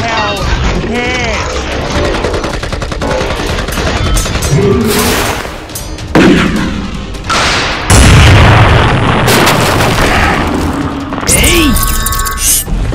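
Action-film sound effects: a rapid run of gunfire, then loud booms about six and eight seconds in.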